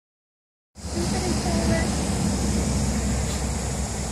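Outdoor background after a moment of silence: a steady low rumble and a steady high hiss, with faint voices.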